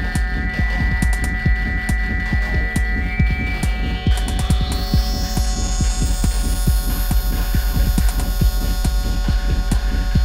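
Techno track: a steady, evenly spaced kick-drum beat under a held deep bass drone and sustained synth tones, with a rising sweep building from about three and a half seconds in.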